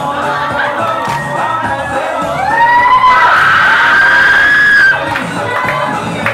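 Dance music with group singing over a steady beat. About two and a half seconds in, a loud high-pitched whooping call rises and is held for about two seconds, then breaks off.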